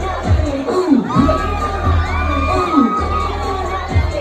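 Loud dance music with a heavy bass line, mixed with shouting and cheering from a crowd; the bass drops out briefly twice.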